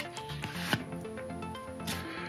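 Soft background music with the sliding rub of glossy trading cards being shuffled in the hands, one sharper scrape a little under a second in.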